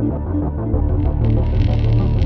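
Film score music: a low, throbbing bass under sustained tones, with a brighter upper layer of quick ticks joining about a second in.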